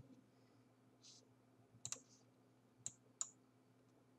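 A few faint computer mouse clicks, about two seconds in and twice close together near the end, over near silence.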